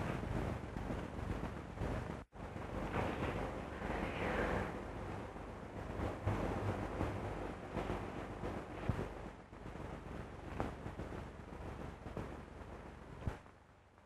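Steady hiss and crackle of an early-1930s film soundtrack in a pause between lines, cutting out for an instant about two seconds in.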